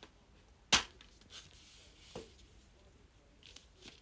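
A metal steelbook DVD/Blu-ray case being opened by hand: one sharp click a little under a second in, then soft handling rustle and a second, lighter click.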